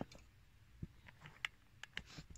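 Faint, scattered clicks of an Allen key working the small screws of an aluminium hood-release handle, a handful of sharp ticks from about a second in.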